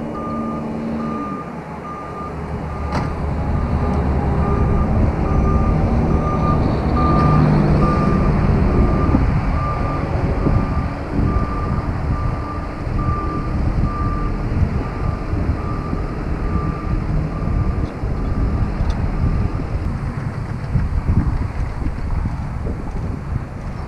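Fork truck's backup alarm giving a regular series of beeps as it travels in reverse towing an RV, over the low rumble of its engine, which grows louder partway through; the beeping stops a few seconds before the end.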